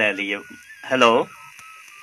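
Studio speech: a short spoken phrase, then a single drawn-out falling vocal sound about a second in, over a faint steady tone that breaks on and off like a telephone-line tone.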